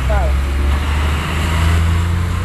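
A motor vehicle engine running close by on the street: a steady low rumble that rises a little in pitch about a second and a half in.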